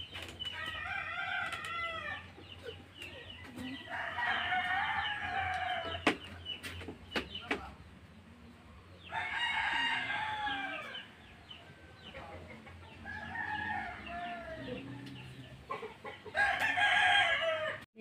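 Domestic roosters crowing, about five long crows a few seconds apart, with a few sharp clicks between them.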